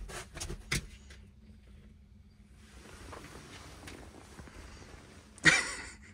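A dog getting down off a bed and moving about: a few soft knocks and rustles in the first second, then a longer stretch of soft rustling as it stretches.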